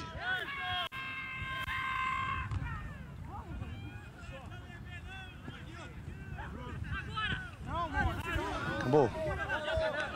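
Distant shouting from players and spectators at an outdoor soccer match. One long steady tone with several stacked pitches sounds about a second in and lasts about a second and a half, and the voices grow louder near the end.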